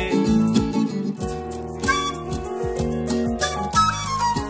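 Instrumental acoustic music: an acoustic guitar playing plucked notes, with bass.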